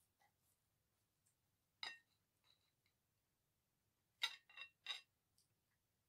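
A metal table knife clinking against a ceramic plate while a cake is cut: one clink about two seconds in, then three quick clinks between four and five seconds.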